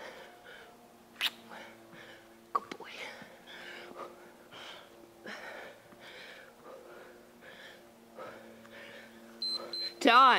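A woman breathing hard and rhythmically, about two breaths a second, while she does plank ups. Two sharp taps come early on, a faint steady hum runs under it, and a short high beep sounds near the end.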